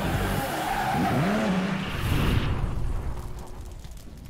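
Car drift sound effect: tyres screeching with an engine revving up and down, starting abruptly, with a brief hiss about two seconds in, then fading away.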